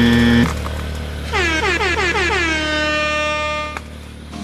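A short horn blast ending about half a second in, then an edited-in sound effect: several tones glide downward together and settle into a held chord, which cuts off sharply just before the end.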